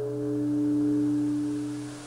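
A steady low pitched tone with a few overtones above it. It swells to its loudest about a second in, then fades.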